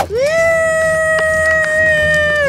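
A high-pitched voice shouting one long, excited 'woo!', swooping up at the start and then held on a steady pitch.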